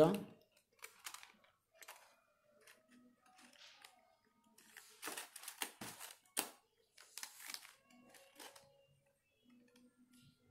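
Faint rustling and crinkling of stiff double-sided paper as petals are pressed and shaped by hand, in short irregular scrapes, most of them in the second half.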